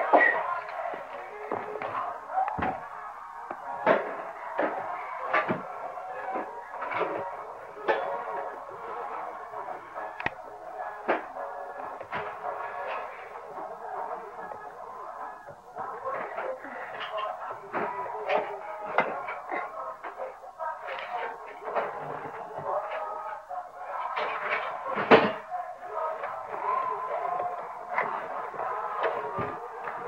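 Music playing in the room, with short knocks and taps scattered throughout and a sharper knock near the end.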